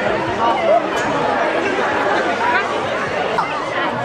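Chatter of many voices at once, indistinct, with higher children's voices calling out among them.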